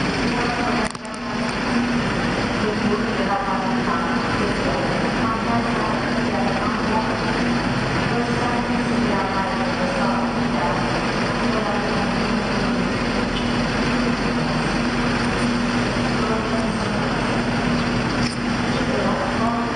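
A bus engine idling with a steady low hum, under indistinct chatter from many voices.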